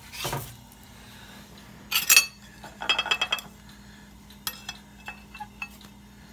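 Metal spatula scraping on a griddle under a pancake, then clattering and clinking against a plate as the pancake is set down, with a quick run of light clinks about three seconds in.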